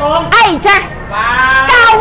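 A woman's high, sing-song voice, talking with one long drawn-out note in the second half.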